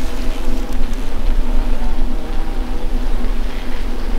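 Loud, steady hum of a large honeybee colony buzzing on its open comb, heard from very close, with a low rumble beneath it.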